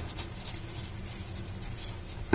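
Faint scratching of a plastic spoon pushing cocoa powder through a fine mesh strainer, with a few light ticks in the first half second.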